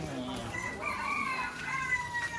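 A rooster crowing once: one long drawn-out call starting about half a second in and tailing off slightly at its end.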